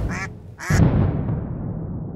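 Logo sound effect of two duck quacks about half a second apart, each set over a deep boom. The second boom fades out slowly.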